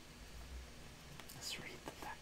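Soft breathy whisper and mouth sounds from a man, with a few faint clicks, about a second and a half in, in a quiet room.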